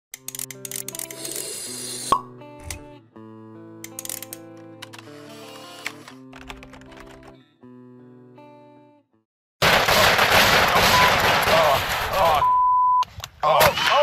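Logo intro jingle of short electronic notes and plinks with sharp clicks, running for about nine seconds. After a brief gap it gives way to much louder noise with voices and a short steady beep.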